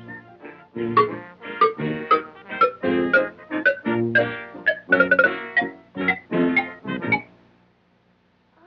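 Short instrumental music cue, a run of short pitched notes in a steady rhythm, stopping about seven seconds in.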